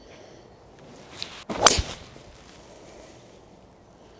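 Golf club swishing on the downswing, then a single sharp, crisp strike as a fairway wood hits the ball about one and a half seconds in, with a short ringing tail.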